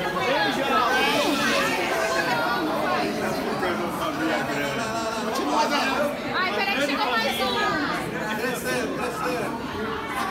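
Several people talking at once in a large room, overlapping voices and chatter.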